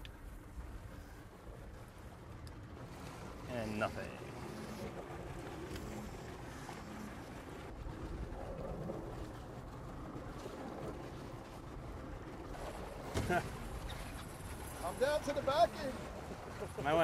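Steady low rumble of a fishing boat at sea, its engine running with wind and water noise, and a few brief snatches of voices.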